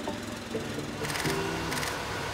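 Background music on an edited soundtrack: a quieter passage with held notes and a light, even beat.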